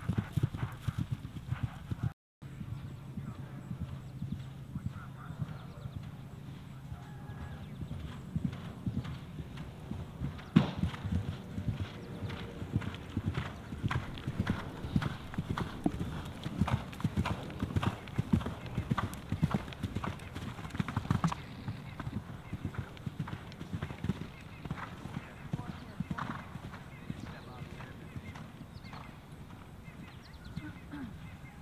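Event horses galloping on grass, their hoofbeats thudding in a fast, regular rhythm, with a short dropout about two seconds in.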